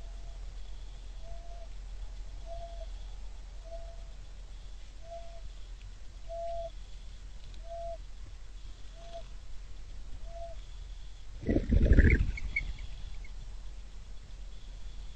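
A short low call repeated evenly about once every second and a quarter, typical of a bird calling over and over. About eleven and a half seconds in comes a loud rumbling burst lasting under a second, followed by a few brief high chirps.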